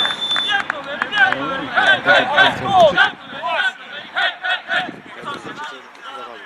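Footballers' voices shouting and calling out after a goal, several short cries overlapping, loudest a couple of seconds in and dying away towards the end.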